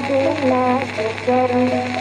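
A Bengali kirtan devotional song from an old recording: a female voice sings long, gliding, ornamented held notes. A steady low hum and surface hiss from the old record run underneath.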